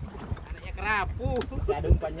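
A man's voice in short unclear bits over a low, steady rumble of wind and choppy sea water around a small boat.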